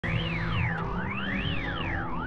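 Electronic music: a synthesizer tone sweeping smoothly up and down like a siren, about once a second, over a bed of low steady drone tones.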